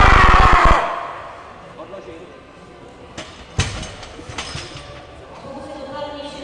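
A loud yell, falling in pitch, through the first second as the lifter drives up out of a heavy barbell squat. About three and a half seconds in, the loaded barbell clanks into the squat rack's hooks, with a lighter knock just before it.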